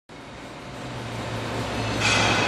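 Steady low machinery hum over a noisy background, growing louder as the sound fades in.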